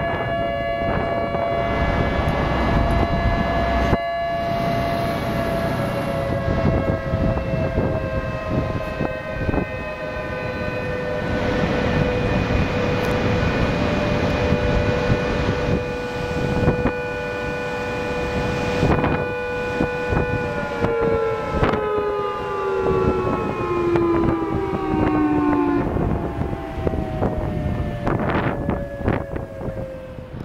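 Outdoor civil-defense warning siren sounding a steady two-pitch tone, beginning to wind down and fall in pitch about two-thirds of the way through. A rushing noise runs underneath.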